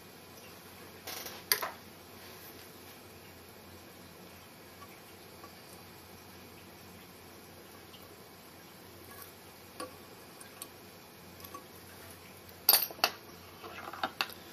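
Quiet room hiss with small clicks and taps of fly-tying tools being handled at the vise: a brief rustle about a second in, a few faint ticks later, and a cluster of sharp, louder clicks near the end.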